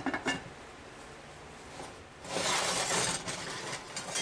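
A cast iron Dutch oven lid clinks down onto the cast iron pot, with a couple of short metallic rings. About two seconds later comes a rough scrape of about a second as the heavy pot is moved off the electric coil burner.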